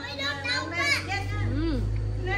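Children's voices talking and calling out off to the side, with a low rumble coming up about a second in.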